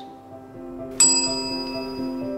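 A chrome reception-desk service bell struck once about a second in, its bright ding ringing on and slowly fading, over soft background music.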